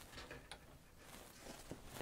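Near silence, with a couple of faint brief clicks from a hand shifting a stiff Peltex-backed fabric piece at the sewing machine.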